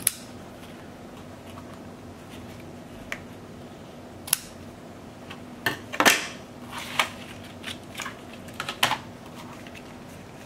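Scissors snipping a grosgrain ribbon end with a sharp snip right at the start, followed by scattered light clicks, taps and paper rustles as the card-stock holder and tools are handled on the table, busiest around the middle.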